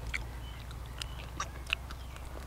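Close-up mouth sounds of a man gnawing and chewing grilled field rat meat off the bone: wet smacks and about four sharp clicks, the loudest near the end, over a steady low hum.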